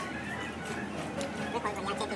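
Indistinct voices over background music, with a brief utensil click at the start.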